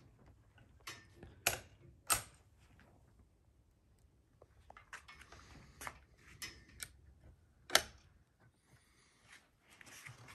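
Savage Springfield Model 120 single-shot .22 rifle being handled between shots, its bolt and action making a series of small metal clicks. About three-quarters of the way in there is one much louder, sharp click.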